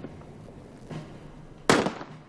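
A single rifle shot near the end, sharp and loud with a short echoing tail, over a faint low background.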